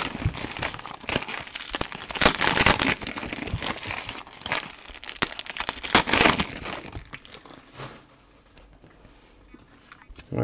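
Foil trading-card pack wrappers being crumpled and crinkled in the hands, a run of crackling bursts that dies away about eight seconds in.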